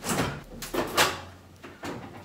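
A kitchen door being opened and shut: a brief rustle at first, then a loud knock about a second in and a smaller click near the end.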